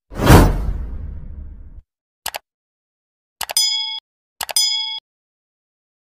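Animated-title sound effects: a loud whoosh with a deep boom that fades over about a second and a half, a short double click, then two bright chime dings about a second apart.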